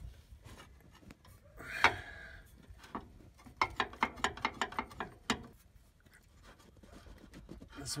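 Rusty radius arm bracket and rubber bushing on a Ford E350 being wiggled and pulled by hand to work them loose: a sharp knock about two seconds in, then a run of quick metal clicks and rattles for about three seconds.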